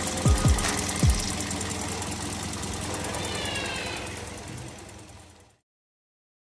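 Toyota Vios's VVT-i four-cylinder engine idling with the bonnet open, a steady fine ticking over the running sound; the owner calls it smooth-running. The sound fades out over the last couple of seconds.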